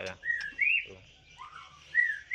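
White-rumped shama (murai batu) whistling a short two-note phrase twice: a level note that drops away, then a higher note that rises and falls.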